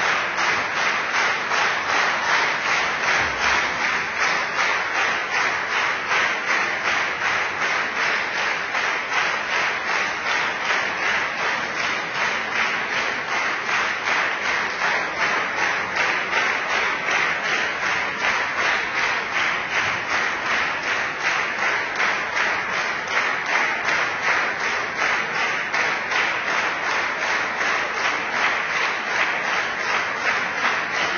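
Large concert audience clapping in unison, in a steady even rhythm of about three claps a second.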